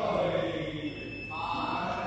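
A person's voice making drawn-out, pitched sounds rather than clear words.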